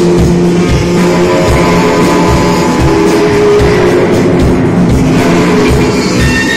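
Live band playing loud: electric guitar and bass guitar over a steady drum beat.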